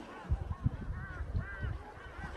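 Birds calling: a run of short, arched calls repeated several times, mixed with low thumps.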